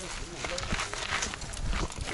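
Mountain bike climbing a rooty dirt trail: irregular knocks and crunches of tyres and feet on roots, stones and pine needles, over a low rumble.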